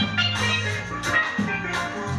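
Live ska band playing: a steady bass line and drum kit under bright, quick steel pan notes.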